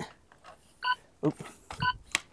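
Short electronic timer beeps, one each second, sounding twice: about a second in and again near the end, marking the seconds of a timed test. A man says a brief 'oops' between them.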